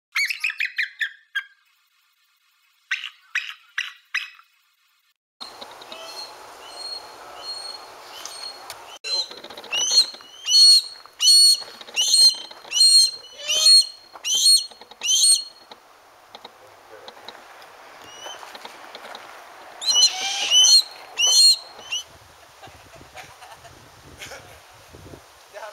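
Birds calling: a quick burst of chirps, then after a pause a run of about eight sharp, high, repeated calls roughly one every three-quarters of a second, and a few more near the end, over a steady background hiss.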